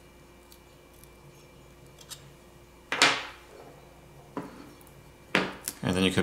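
A pry tool clicking against a smartphone's speaker grill and frame while prying the grill up: one sharp click with a brief ring about three seconds in, another click a second later, and a few quick clicks near the end.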